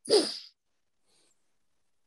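A short, breathy human vocal sound falling in pitch, about half a second long, heard over a video call.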